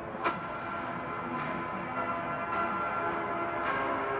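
Film trailer soundtrack playing through a speaker: a sharp hit just after the start, then several held tones sounding together.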